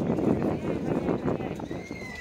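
Hoofbeats of a field of racehorses galloping down the home straight, mixed with crowd voices and shouts.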